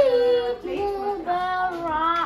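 Children's voices singing a song together, joined by a woman's voice, with long held notes that glide between pitches.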